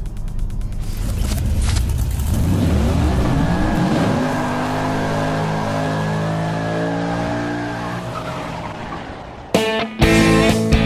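Sound-effect car burnout: an engine revving up over a low rumble, then held at high revs with a steady tyre screech, fading out near the end.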